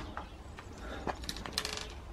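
Compost sprinkled by hand over a plastic seed tray: faint rustling with small ticks of falling crumbs, and a quick flurry of ticks about one and a half seconds in.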